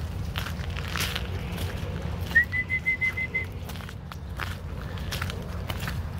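Footsteps on a gravel path, with one whistle of about a second a little over two seconds in, held at a single high pitch and broken into quick pulses.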